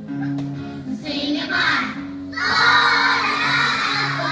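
A backing track of held low notes playing, with a group of young children singing along over it; the children's voices come in about a second in and are loudest from a little past halfway.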